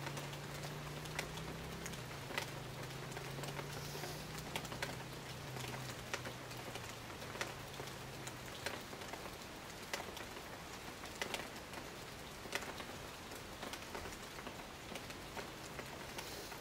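Rain falling on rainforest foliage: a steady patter with frequent separate drops striking close by at irregular intervals. A low steady hum sits under it and fades out about halfway through.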